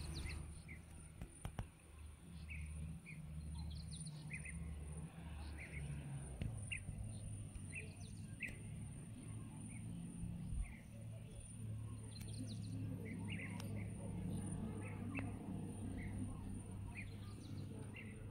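Small birds chirping, short high calls scattered every second or so, over a low steady rumble and a faint steady high whine.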